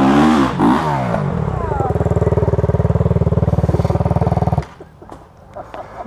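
Dirt bike engine revving up and down, then held at a steady, pulsing note for a couple of seconds before cutting off abruptly about four and a half seconds in.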